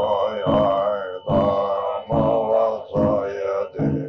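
Tibetan Buddhist ritual chanting by an elderly man: a deep, slightly gravelly voice reciting in short phrases, each about a second long, with brief breaths between them.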